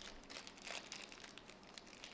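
Faint rustling and small handling noises against quiet room tone.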